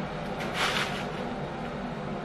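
A teaspoon digging into a foil-lined bag of instant coffee granules, with a short rustling scrape about half a second in.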